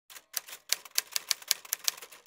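Typewriter keys striking one after another, about five or six sharp clacks a second, typing out a line.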